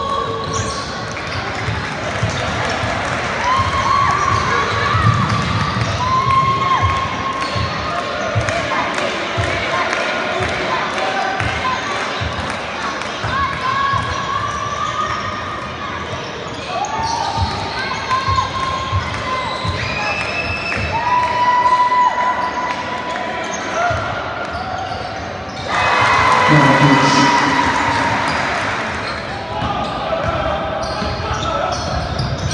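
A basketball being dribbled on a hardwood court, with short shouts and calls from players and spectators echoing in a large hall. The sound swells louder about 26 seconds in, then eases off.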